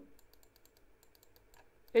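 Faint, rapid, irregular light clicks and taps, about five to seven a second, of a stylus writing on a pen tablet.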